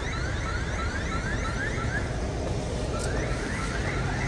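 Electronic alarm sounding in quick repeated rising tones, about three a second, with a short break about two seconds in, over a low street rumble.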